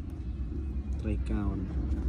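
A voice speaking a short phrase about a second in, over a steady low rumble.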